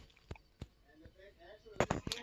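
A quiet moment broken by a few sharp taps: two light ones in the first second and a louder double click near the end, with a faint voice in between.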